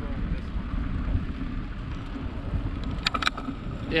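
Wind buffeting the microphone of a camera on a moving bicycle, a steady low rumble, with a brief cluster of sharp clicks about three seconds in.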